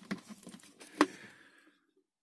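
Plastic bucket lid being lifted off and handled: faint rustling with one sharp click about a second in.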